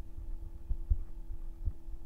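Irregular low, dull thumps of a stylus tapping and moving on a pen tablet or desk, the loudest about a second in, over a steady electrical hum.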